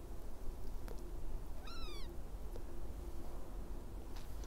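A single short animal call, about half a second long, falling in pitch about two seconds in, over a faint steady background hum with a few soft clicks.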